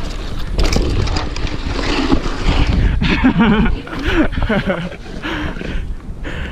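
Wind buffeting a helmet camera's microphone and a mountain bike's tyres and frame rattling over a dry dirt singletrack on a fast descent. From about halfway in come short wordless shouts.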